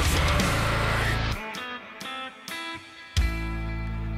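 Metalcore/deathcore band playing: a heavy full-band passage drops out about a second and a half in to a few sparse, clean guitar notes, then a held chord over a steady bass comes in near the end.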